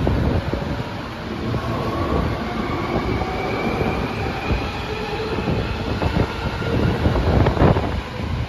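Hankyu 1300 series electric commuter train pulling out of a station and picking up speed: a steady rolling rumble with motor whine rising in pitch, and wheels clacking over rail joints, loudest near the end.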